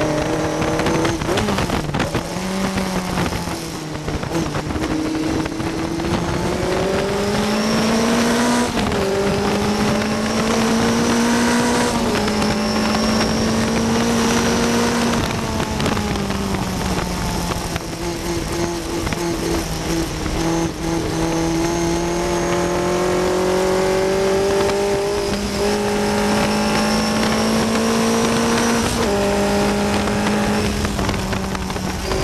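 On-board sound of a 1960 Cooper T53 Lowline's engine at racing revs, its pitch climbing hard and dropping back at each gear change as the car accelerates. Wind and road noise rush over the open cockpit throughout.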